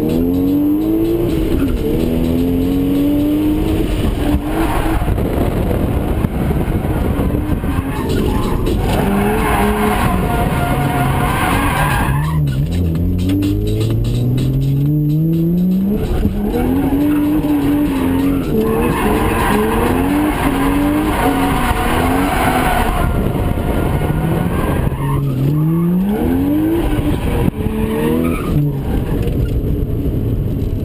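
1JZ straight-six in a Lexus SC300 revving hard through a drift, inside the cabin, its pitch climbing and dropping again and again. Tyres squeal and skid through much of it.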